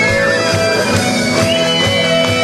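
Live rock band playing: electric guitar holding long notes that bend in pitch, over a steady beat of drums and bass.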